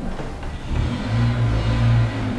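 A low, steady rumble that grows louder about a second in and is strongest near the end.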